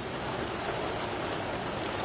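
Steady, even background noise with no distinct events, in a pause between a man's speech.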